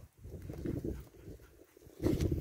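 Cattle hooves trotting on dry, dusty dirt: a scatter of soft, irregular thuds that fade in the second half.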